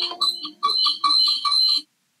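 Short electronic sound effect: held chime notes ringing out, then rapid beeping at about six beeps a second over a high steady tone, cutting off suddenly near the end.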